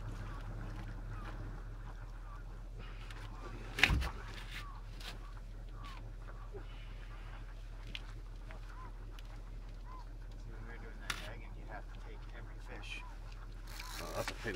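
Quiet ambience aboard a fishing boat during a sturgeon fight: a steady low hum with faint, short distant calls, and one sharp knock about four seconds in.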